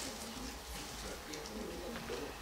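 Faint, low murmured talk from people standing away from the microphones.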